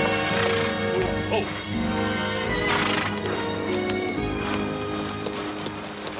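Western score music playing over a group of horses being ridden and led: hooves on the ground and a short horse whinny about a second in.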